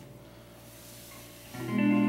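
Near-quiet pause, then about one and a half seconds in a guitar chord is struck and left ringing.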